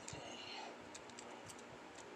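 Faint, scattered light clicks and rubbing of fingers handling a small die-cast Matchbox pickup truck and its opening plastic tailgate.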